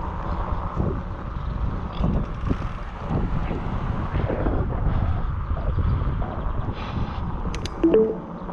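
Wind buffeting the microphone of a camera on a bicycle riding along a concrete sidewalk, with a steady low rumble from the ride. There are a few sharp clicks near the end.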